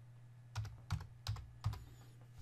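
Computer keyboard keys being typed, a handful of separate keystrokes spelling out a word, over a faint steady low hum.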